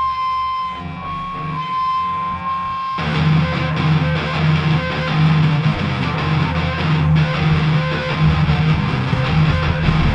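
Live alternative-rock band playing with no vocals. For the first three seconds a held high electric-guitar note shifts slightly in pitch over bass notes. Then the full band comes in suddenly with distorted electric guitars, bass and drums.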